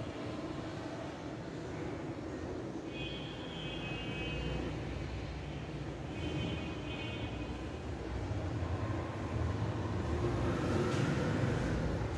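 Marker pen on a whiteboard, squeaking twice in thin high tones, each lasting about a second, over a steady low background rumble. A few faint clicks near the end.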